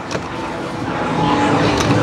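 Steady arcade background din: a dense mix of machine noise and distant chatter, growing gradually louder.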